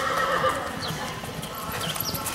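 Horse galloping on arena dirt, its hoofbeats heard on the run home after the last barrel of a barrel-racing pattern.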